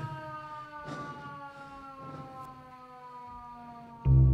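A single quiet held tone gliding slowly and steadily down in pitch, sounded as part of the song.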